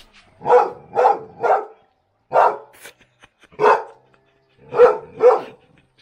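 A dog barking seven times: a quick run of three about half a second apart, two single barks, then a closing pair.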